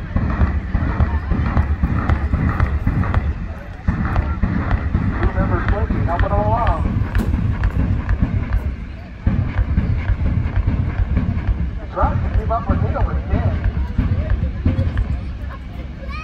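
Distant jet engine of a drag-strip jet exhibition vehicle at full power on its afterburner, a loud steady rumble with a rough crackle. Voices rise over it twice.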